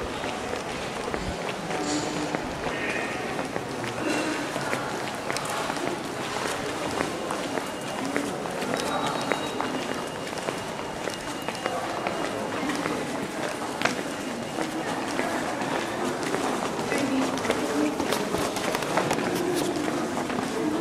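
Indistinct talk of several people walking through a hall, with footsteps and scattered knocks and clicks. The sharpest click comes about fourteen seconds in.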